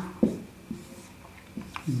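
Marker pen writing on a whiteboard: a few faint short strokes.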